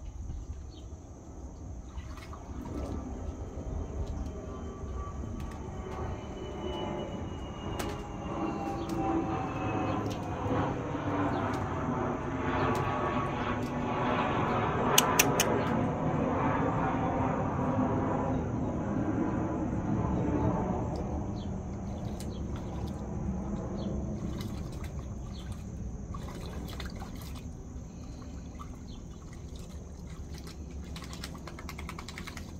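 Dog pawing and splashing in the water of a shallow plastic wading pool. Over it, a louder passing noise swells for about twenty seconds, peaks just past the middle with a few sharp clicks, and fades, its pitch falling as it goes.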